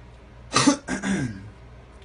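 A man coughing and clearing his throat, two loud coughs in quick succession about half a second in, the second longer and trailing off.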